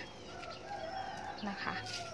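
A rooster crowing once: a single drawn-out call of about a second.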